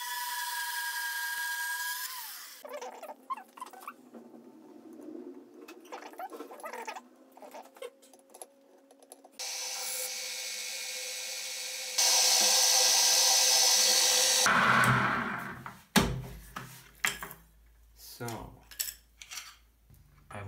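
Metal-cutting band saw running with a steady whine on its freshly welded blade, stopping after a couple of seconds. Later a drill press drills a hole in an aluminium bar: a steady run that steps louder partway through, then spins down.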